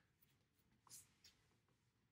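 Near silence: faint brushing of a whiteboard eraser wiping the board, with one faint tap about a second in.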